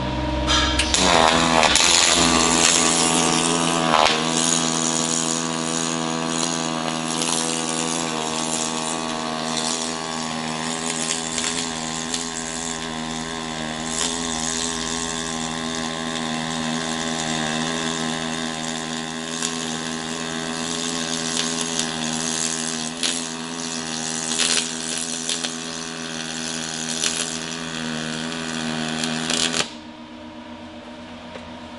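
Lincoln Power MIG 360MP pulsed MIG arc welding a T joint in 3/16-inch steel with .045 wire and 90/10 argon-CO2 gas. It is a steady pitched buzz with scattered crackle, starting just under a second in and stopping abruptly just before the end. The pulse switches the arc between spray and short-circuit transfer.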